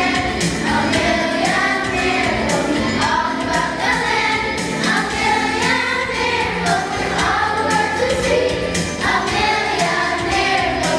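Children's choir singing, many young voices together in a sustained melody.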